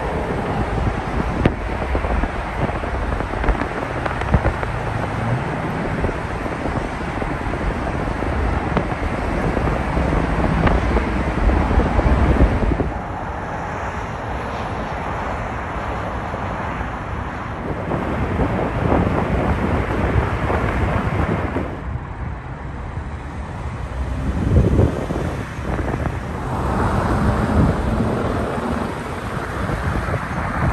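Steady road and wind noise heard from inside a moving car on a freeway: a low rumble of tyres and engine under a hiss of air. It shifts abruptly in level and tone several times.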